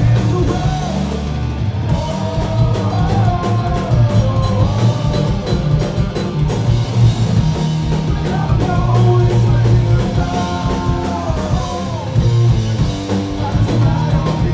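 Punk rock band playing live: electric guitars and a drum kit going hard, with a man singing over them.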